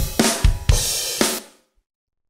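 A recorded drum kit playing back from a multitrack session: a few drum hits under a ringing cymbal, dying away about one and a half seconds in.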